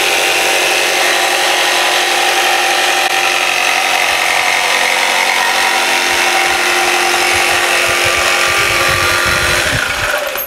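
RYOBI jigsaw with a fine-toothed dual-cut scroll blade running steadily as it cuts a curve through thin plywood. It stops abruptly near the end.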